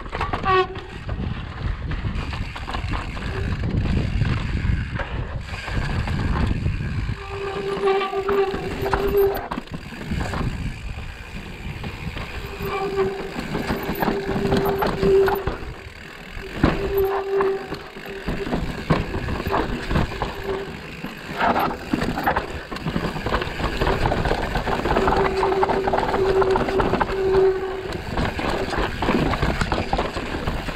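Mountain bike riding over a rocky trail: steady wind rush on the microphone with tyre noise and knocks and rattles from the bike over the stones. A steady whine comes and goes in several stretches of one to three seconds, most of them in the second half.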